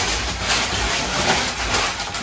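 Aluminium foil crinkling and rustling as it is handled and laid out on a counter, a steady papery crackle.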